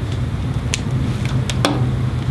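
RCA phono plugs being handled and pushed onto mating connectors, giving a few sharp clicks, over a steady low hum.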